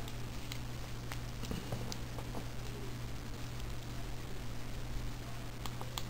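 Faint, scattered small clicks and handling noise from a precision screwdriver turning a 2-56 machine screw into a plastic radio-knob assembly, over a steady low hum.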